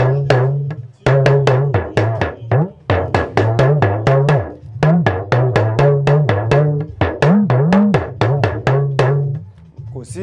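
Hourglass talking drum struck with a curved stick in quick phrases, about three or four strokes a second. Its pitch bends up and down as the player squeezes the drum, imitating the rise and fall of spoken words rather than a song. There is a short break about a second in.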